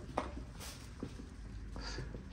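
A few faint, soft footsteps over quiet background noise.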